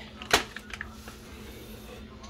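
One sharp knock about a third of a second in, then a few faint light ticks: a bag of frozen pineapple chunks and kitchen things being handled on a counter, with a low steady hum underneath.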